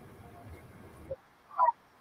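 Faint background noise of a video call that cuts out abruptly just over a second in, as if gated by the call's noise suppression. It is followed near the end by one brief, short pitched sound.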